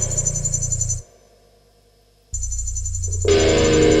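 Instrumental music from an experimental rock band: a low sustained drone that cuts off suddenly about a second in, leaving a gap of over a second before it returns, and a held chord of several steady tones coming in near the end.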